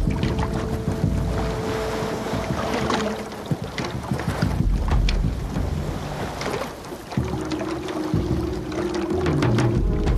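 Film soundtrack music with long held notes over a steady rushing noise like wind and water.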